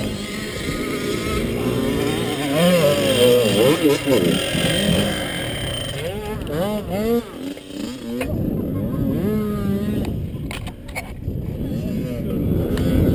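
ATV engines running, revving up and down in several short rises and falls in the middle, then settling to a steadier idle.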